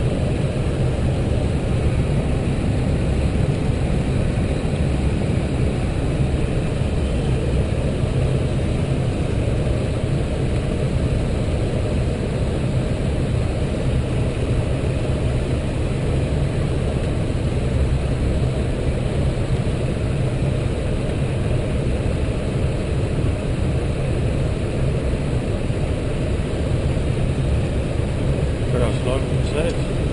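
Steady low rumble and rush of an Airbus A320 flight deck in flight on the descent, the airflow and engine noise holding an even level throughout.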